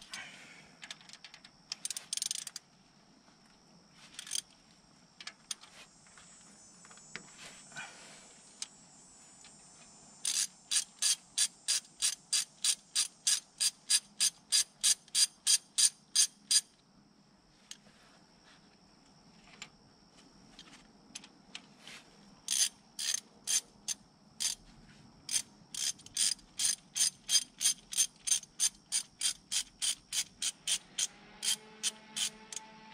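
Hand socket ratchet clicking in quick, even runs of about four clicks a second as bolts are worked loose among the rocker arms of a 5.9 Cummins diesel cylinder head. There are two long runs of clicking, and before them a few scattered clicks and a short metallic scrape.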